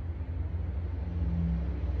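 A steady low rumble in the background, with a faint steady hum rising briefly about halfway through.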